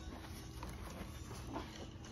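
Faint rustling and light handling knocks as the fabric seat cover and padding of a Doona infant car seat are worked around the harness on its plastic shell, over a low room hum.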